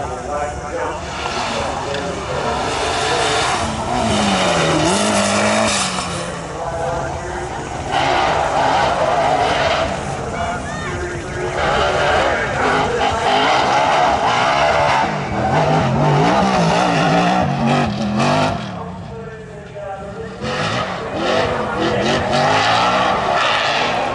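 Toyota race truck revving hard at the start line in repeated loud surges, with tyres squealing and spinning.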